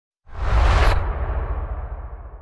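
Logo-reveal whoosh sound effect: a sudden rushing swish that starts a moment in and cuts off sharply just before a second, over a deep boom that slowly fades away.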